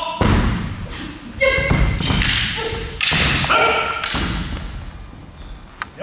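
Short shouted kiai yells, several in a few seconds, mixed with heavy thumps of bare feet stamping and landing on a wooden gym floor during a sword-fight exchange, echoing in a large hall.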